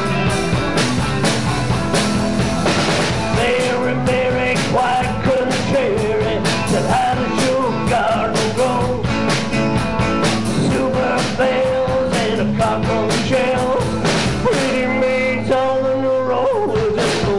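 A live rock and roll band playing: electric guitars and electric bass over drums, with a steady beat.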